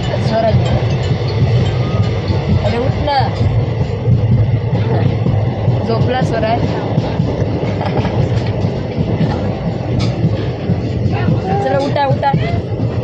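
Moving passenger train heard from inside a coach with the window open: a steady low rumble of the running carriage, with a few scattered clicks from the wheels and track.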